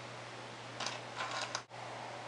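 Faint rustling of hair being handled and pinned into a bun, two short rustles a little under a second apart, over a steady low hum of room tone.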